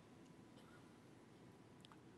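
Near silence: faint room tone, with a tiny tick near the end.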